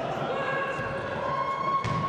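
Futsal match sound in an echoing indoor hall: indistinct players' voices and shoe-and-ball noise, with a ball kick near the end.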